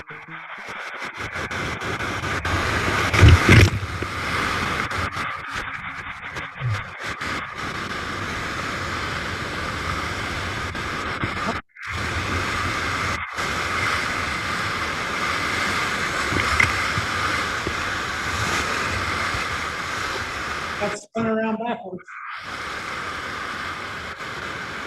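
Whitewater of a big Colorado River rapid rushing and crashing around a tule reed raft, close on the raft's camera, as a steady loud rush. A heavy low thump comes about three seconds in, and the sound briefly cuts out near the middle and again near the end.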